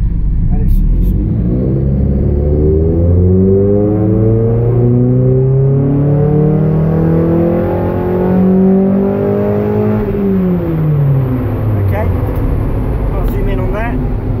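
Mazda MX-5 NB facelift's four-cylinder engine making a full-throttle power run on a rolling road: the engine note climbs steadily in pitch for about eight seconds, then drops away quickly as the revs fall about ten seconds in. The intake cam is held at 10 degrees advance for this run.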